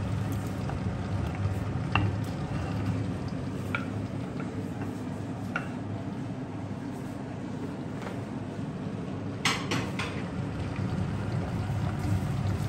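Wooden spatula stirring sliced onions in hot palm oil in an enamelled cast-iron pot, with a frying sizzle and scattered knocks and scrapes of the spatula against the pot, a sharper pair of knocks about three-quarters of the way in. A steady low hum runs underneath.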